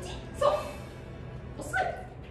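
Small dog, a dachshund, barking twice: two short barks, one about half a second in and one near the end.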